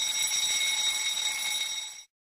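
Alarm-clock ring from a countdown timer reaching zero: a steady, high-pitched ring that lasts about two seconds and cuts off suddenly.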